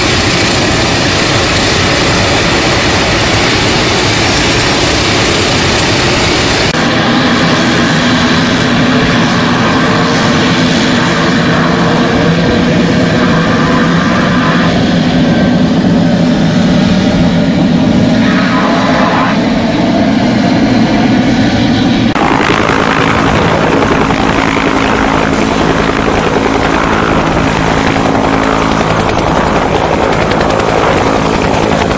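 Propeller engines of a DC-3-type twin-engine transport aircraft running loud and steady at high power through its takeoff and climb-out. The engine sound changes abruptly twice, about a third and two-thirds of the way in, where shots are cut together.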